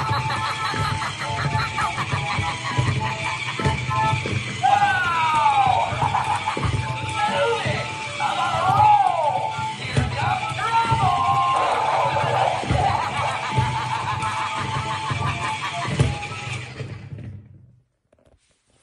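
Animated Halloween clown prop playing creepy music with a voice and swooping, sliding sounds. It cuts out about a second before the end.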